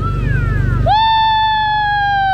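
A person's voice holding one long high 'ooh' note, which starts about a second in and falls away at the end, over a steady low hum.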